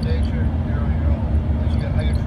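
Steady cabin noise of an Embraer ERJ 145 on approach: a low, even rumble of its two rear-mounted Rolls-Royce AE 3007 turbofans and the airflow past the fuselage, with voices talking faintly underneath.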